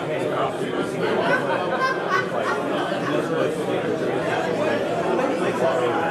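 Many people chatting at once, overlapping conversations with no single voice standing out.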